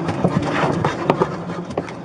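Scuffling and irregular sharp clicks as a dog is lifted and scrambles up into a car's back seat, picked up close on a body-worn camera.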